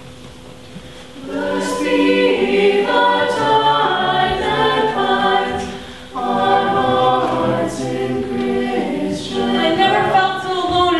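Choir singing a slow hymn in harmony, with long held notes. It comes in about a second in, breaks off briefly around the middle and then starts the next phrase.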